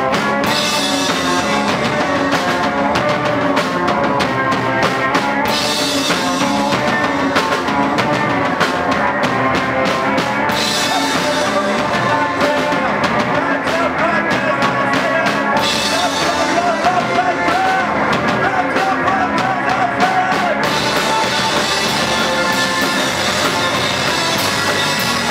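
A rock band playing live and loud: electric guitars and bass over a full drum kit. The cymbals drop out for a moment about every five seconds, marking repeating sections of the song.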